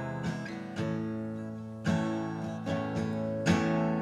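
Steel-string acoustic guitar strumming slow chords, about one a second, each chord left to ring.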